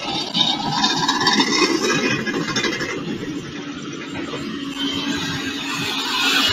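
Heavy construction vehicle engine running on a dirt road works site, a rough steady rumble with a steady hum that comes in about halfway through.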